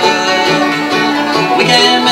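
Acoustic bluegrass band of mandolin, five-string banjo and acoustic guitar playing an instrumental break, with plucked notes over a steady bass rhythm.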